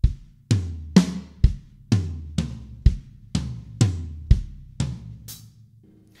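Drum kit played slowly, one stroke at a time: a linear fill of twelve single notes about two a second, the kick drum on every third note and the sticks moving between rack tom, snare and floor tom, ending on the hi-hat.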